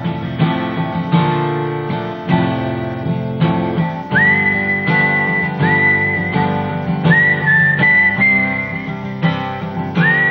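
Steel-string acoustic guitar strummed and picked in a steady chord pattern, built on a simple two-finger chord shape, with a whistled melody over it. The whistled notes slide up into long held notes, several times in the second half.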